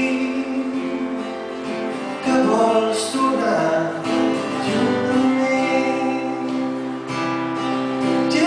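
A man singing to his own acoustic guitar in a live solo performance of a song.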